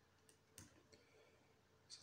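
Near silence, with two faint taps of a stylus writing on a tablet screen, the clearer one just over half a second in.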